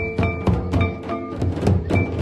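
Folk drumming on a barrel drum, quick even strokes about four a second, each a deep beat with a short ringing tone on top.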